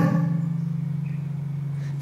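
A pause between spoken words, filled by a steady low hum while the overall sound slowly fades a little.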